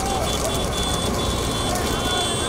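A bullock cart race passing on a tarmac road: a steady rumble of carts and vehicles, with faint shouting voices and a thin high tone that comes and goes.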